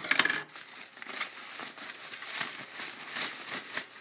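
Plastic bubble wrap crinkling and crackling as hands unwrap a small package, loudest in the first half second.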